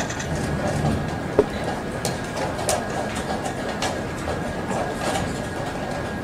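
Tournament-hall background noise from a blitz chess game, with irregular sharp clicks of chess pieces being set down and chess clocks being pressed. The sharpest click comes about a second and a half in.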